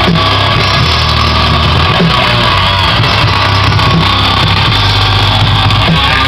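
A metal-punk band playing live and loud: electric guitar with drums and cymbals.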